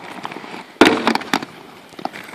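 Aggressive inline skates striking a slatted wooden bench as the skater jumps onto it for a grind: a loud smack a little under a second in, a brief scraping grind, and a second sharp knock as he comes off. Hard skate wheels rolling on paving stones sound throughout.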